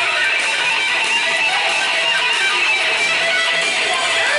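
Music with strummed guitar, steady and continuous.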